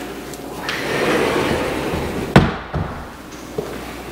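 A pantry closet door being closed: a rushing sound as it moves, then one sharp bang as it shuts a little past halfway through, with a smaller knock right after.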